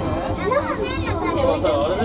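Children's high, excited voices inside a moving monorail car, over the car's steady low running rumble.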